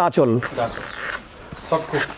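Linen saree rustling as it is unfolded and spread out by hand, between short bits of a man's speech.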